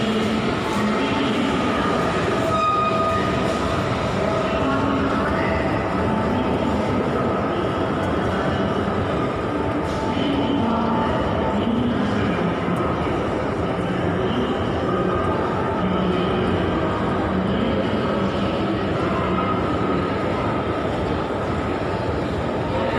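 Steady din of a busy underground metro station heard from a descending escalator: a continuous rail-like rumble with crowd voices mixed in.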